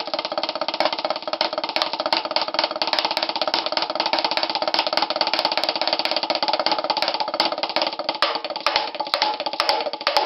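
Drumsticks playing a fast, continuous, even double stroke roll on a Vic Firth rubber practice pad resting on a snare drum.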